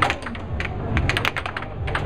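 Air hockey puck clacking off hard plastic mallets and the table's rails in a fast rally: a quick, uneven run of sharp clicks, about a dozen in two seconds, over a steady low hum from the table's air blower.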